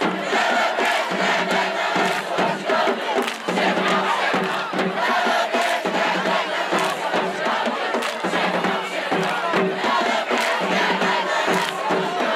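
HBCU marching band playing a stand tune in the bleachers: brass and sousaphones over a steady drum beat, mixed with crowd noise.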